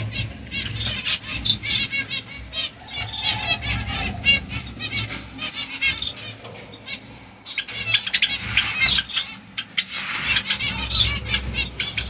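Small caged birds chirping in many short calls and fluttering their wings.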